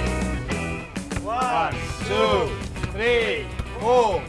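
Background music, and from about a second in, voices calling out the count of a football being juggled, one drawn-out shout rising and falling in pitch on each touch, about one every 0.8 seconds.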